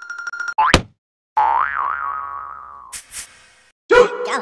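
Cartoon sound effects: a quick rising zip a bit under a second in, then a wobbling boing that slides down in pitch, and a short burst of noise about three seconds in.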